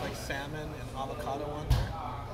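Indistinct voices in the background, with one short, sharp thump near the end that stands out as the loudest sound.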